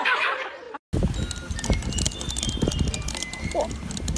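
Horse hooves clip-clopping on a road, a run of irregular sharp knocks over a low rumble, after a laughing voice that cuts off within the first second.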